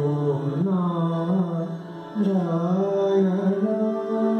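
A man singing a slow Indian devotional song, his voice gliding between notes, with sitar accompaniment. There is a brief breath pause about halfway through, then he holds a long steady note near the end.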